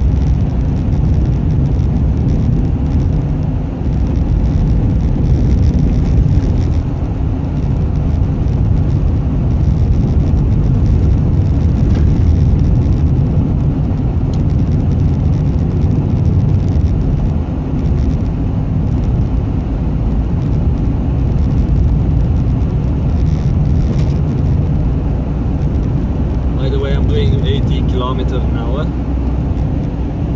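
Steady low road and engine rumble heard inside a moving car's cabin, its winter tyres running on an icy, snow-covered highway.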